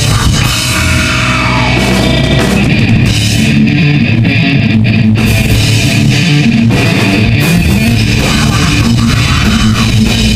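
Live heavy metal band playing loud: distorted electric guitar riffing over a drum kit.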